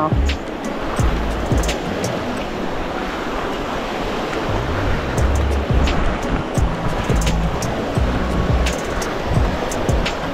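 Small waves washing over the shallows in an even hiss, with background music and its low bass notes playing over it.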